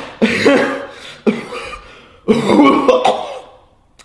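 A person coughing, three loud coughs about a second apart, each trailing off.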